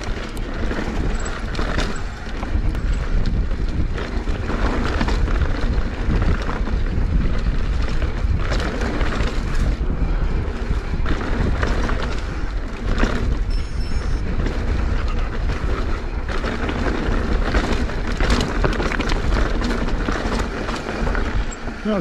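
Mountain bike descending a rough dirt and stony track: a continuous rumble of tyres and wind buffeting the microphone, broken by frequent clatters and knocks as the bike rattles over stones.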